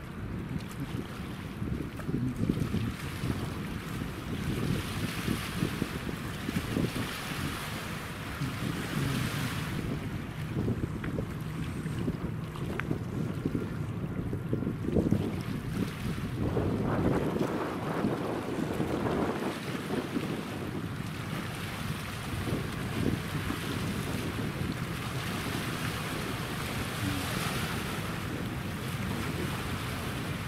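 Wind buffeting the microphone in uneven gusts, heaviest about halfway through, over river water lapping and a faint low hum from a passing LNG-fuelled feeder container ship.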